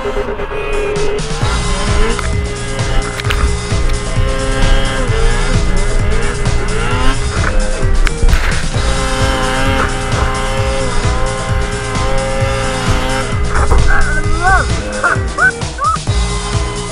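Electronic dance music with a steady heavy beat, mixed with Ski-Doo snowmobile two-stroke engines revving hard as they plough through deep powder snow. Quick up-and-down rev blips come near the end.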